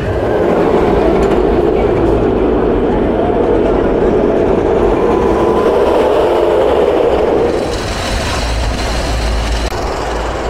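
Single-rail steel roller coaster train running along its track: a loud, steady rumble that eases off about three-quarters of the way through.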